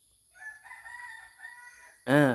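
A rooster crowing faintly, one long crow of about a second and a half.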